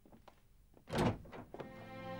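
A wooden door thudding shut once, followed by a couple of softer knocks. Soft background music with held notes then begins.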